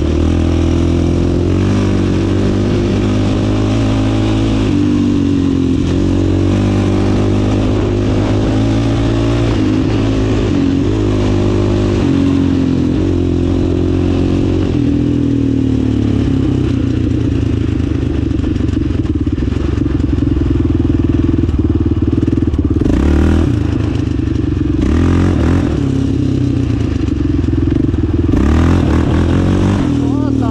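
Yamaha Raptor 700 quad's big single-cylinder four-stroke engine under way on a dirt track. Its note holds steady and then steps to a new pitch several times as the revs change, with a couple of brief bursts of noise near the end.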